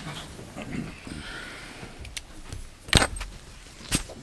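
A room of people settling into seats, with rustling and faint murmurs, then two sharp knocks, the first and louder about three seconds in and the second about a second later.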